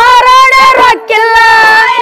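A group of women singing a North Karnataka folk song (choudaki pada) in high voices, two long held notes with a short break about a second in, over a steady beat of sharp clicks.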